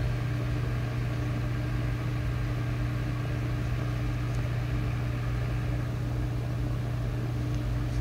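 Electric fan running with a steady low hum.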